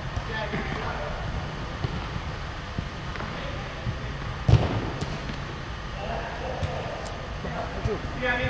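A football being kicked on an indoor five-a-side pitch: a few light knocks and one loud thud about four and a half seconds in, echoing in the hall over a steady low rumble.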